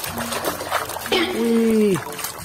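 Water splashing and sloshing as a hand swishes through a plastic basin. A voice holds a long wordless note about a second in.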